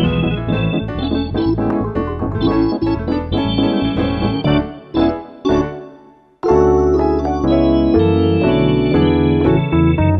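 Instrumental break of a children's folk song played on electronic keyboard over a steady bass line. The music fades to a brief pause about six seconds in, then comes back louder.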